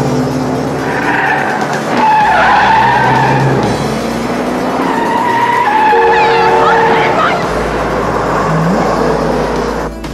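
Car tires screeching in a series of long, wavering squeals over engine noise as cars swerve hard through a corner at speed.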